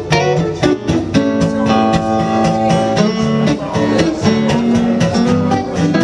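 Electric and acoustic guitar duo playing the instrumental opening of a Western swing tune, with picked single-note lines over a steady rhythm.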